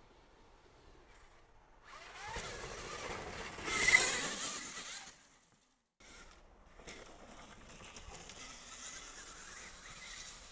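Dirt bike riding along a trail, building to its loudest about four seconds in, then cutting off suddenly. After a second of silence, fainter riding sound carries on.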